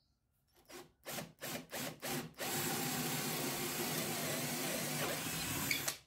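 Cordless drill boring a hole through a softwood board with a twist bit: a few short trigger bursts to start the hole, then a steady run of about three and a half seconds that stops abruptly near the end.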